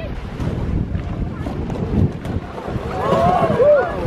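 Wind buffeting the microphone in low gusty rumbles, with sea surf washing on the shore behind it.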